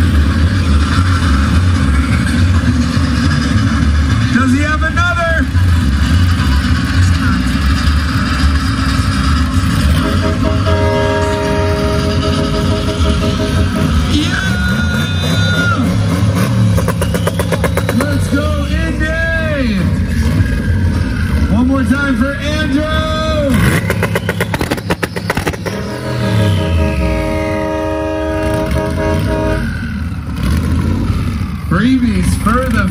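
Loud car engine running with a deep rumble, revved up and down several times, the revs falling away near the end.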